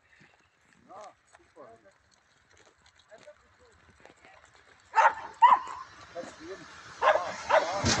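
An electric commuter train of the Salzburger Lokalbahn approaching, its running noise rising over the last second or so. A few short sharp calls, loudest about five seconds in, come before it.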